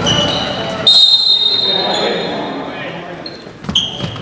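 Basketball game in a gym: a referee's whistle sounds about a second in, one steady high blast lasting over a second, over sneaker squeaks, ball bounces and players' voices echoing in the hall.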